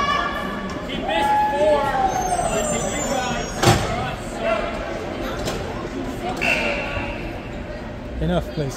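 Voices calling out and talking in an echoing ice rink, with one sharp knock a little before halfway.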